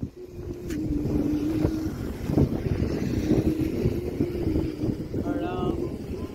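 Wind rumbling on the microphone over passing road traffic, with a steady wavering hum through most of the stretch. A short pitched tone, like a distant horn, sounds near the end.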